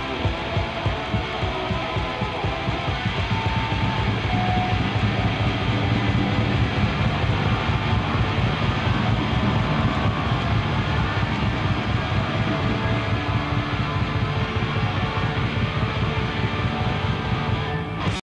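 Live rock band playing loud, with electric guitar over a beat of about two pulses a second; the sound grows fuller and louder about four seconds in.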